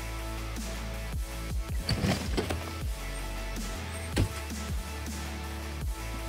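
Background electronic music with a steady kick-drum beat over sustained bass notes.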